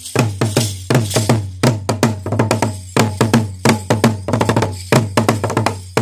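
Traditional Rwandan ingoma drums, a set of three, struck with two wooden sticks in a fast, steady rhythm of many strokes a second, each stroke with a deep booming body.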